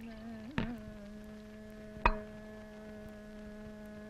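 A steady held drone of several tones sounding together, wavering slightly at first and then holding level, with two sharp clicks about half a second and two seconds in.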